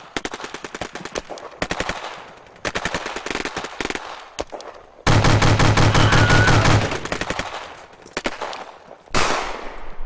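Rapid automatic gunfire from a film battle sound track, in several bursts of quick shots; the loudest and heaviest burst comes about five seconds in and lasts nearly two seconds. A sudden loud blast rings out near the end.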